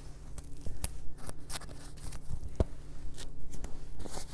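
Rustling and scattered small clicks of handling as a dust mask is put on, over a steady low hum.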